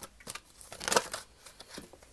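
Tarot cards of the Dreams of Gaia deck being shuffled and handled in the hands: a few soft paper rustles and flicks, the loudest about a second in.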